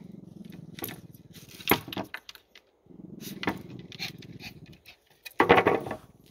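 Small terrier growling low in two long stretches at a chipmunk hiding in a lumber pile, with scattered sharp clicks of paws and scrabbling on the boards. A short louder burst near the end.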